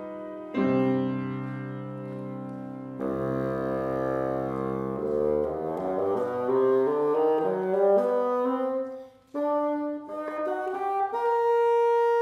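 Bassoon and grand piano playing a classical piece together: a chord comes in about half a second in, a run of quickly rising notes follows in the middle, there is a brief break, and a long held note sounds near the end.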